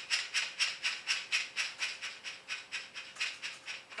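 Steady rhythmic shaker-like rattling, about four shakes a second, light and hissy.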